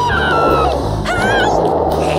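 Cartoon underscore music with two short, high, wavering squeals over it, the second about a second in.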